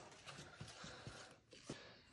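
Faint scraping and a few light taps of a wooden spatula stirring dry flour, spices and chopped herbs in a glass mixing bowl.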